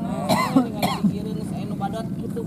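People's voices with two short vocal outbursts, like coughs or throat clearing, in the first second, over a steady low hum.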